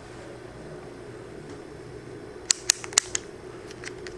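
Rotary function dial of an Extech EX320 multimeter clicking through its detent positions as it is turned to the milliamp range: about five quick, sharp clicks within about a second, a little past halfway, then two faint ones near the end, over a low steady hum.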